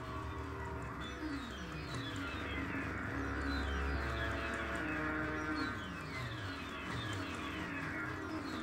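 Experimental electronic noise music from vintage synthesizers: repeated downward pitch sweeps over held tones and a low hum that swells in the middle.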